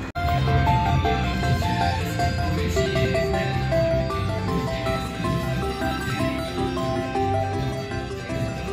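Slot machine game music: a melodic tune of held notes over a steady low pulse, playing while a win counts up on the meter.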